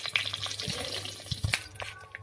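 Stuffed brinjals going into hot mustard oil in a kadhai: the oil sizzles and crackles, with scattered knocks as they go in, the sharpest about one and a half seconds in.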